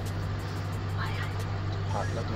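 A steady low hum with faint voices in the background.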